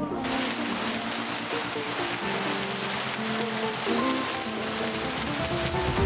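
Background music with held notes over a dense, steady hiss that cuts in suddenly at the start.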